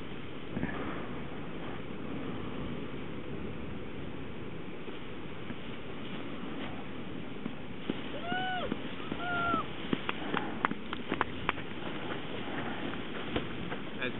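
Steady wind buffeting the microphone. About eight and nine and a half seconds in come two short high calls that rise and fall. A scatter of sharp clicks follows them.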